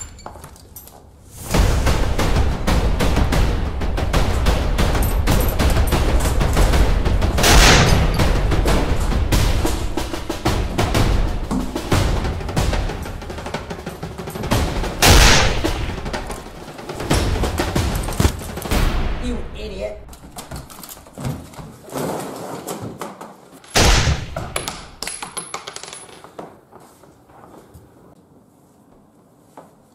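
Dramatic film score mixed with rapid gunfire sound effects, dense for most of the first two-thirds. Three louder single bangs stand out along the way, and the sound thins out and fades near the end.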